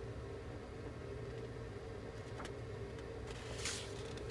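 Steady low background hum, with a faint click about halfway and a brief rustle of the paper instruction sheet being shifted near the end.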